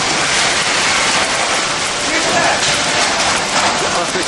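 Automatic packing machine running, a loud steady mechanical hiss and clatter mixed with general factory-floor noise, with people's voices faintly underneath.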